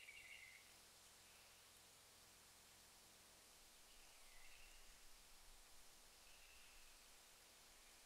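Very faint AI-generated rainforest-at-night ambience from Stable Audio Open 1.0 (Euler sampler, 20 steps, CFG 2.8): an even hiss with a few faint bird-like chirps every couple of seconds, calm and peaceful.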